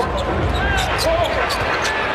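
Basketball arena sound: steady crowd noise with a ball bouncing on the hardwood court in a series of sharp knocks.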